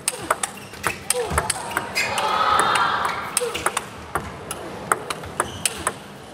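Table tennis ball struck back and forth in a rally: quick, sharp clicks of the celluloid-type ball off the bats and table. About two seconds in there is a brief swell of background voices.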